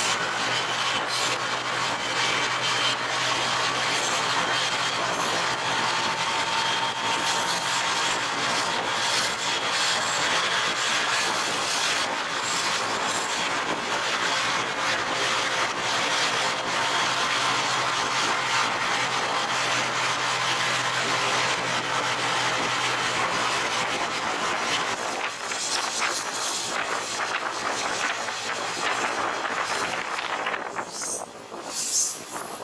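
Diesel railcar running through a tunnel: a loud, steady rush of wheels on rail and air in the confined bore, with a low steady engine hum underneath. It eases off near the end as the train comes out of the tunnel.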